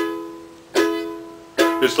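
Emenee Flamingo plastic ukulele strummed in chords, each chord left to ring and fade before the next, with quicker strums near the end.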